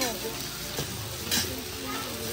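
Samgyupsal pork slices sizzling on a grill pan over a portable butane stove, a steady frying hiss.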